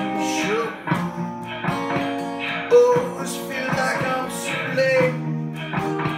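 Acoustic guitar strummed in a steady rhythm, over sustained looped layers of the same performance.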